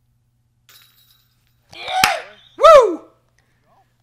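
A putted disc hitting the metal chains of a disc golf basket with a short sharp clink about two seconds in, going in for a birdie. A loud cheering shout follows right after.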